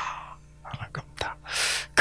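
A man's breath and soft mouth noises picked up close to a handheld microphone, with no words, ending in a short hissing intake of breath just before speech resumes.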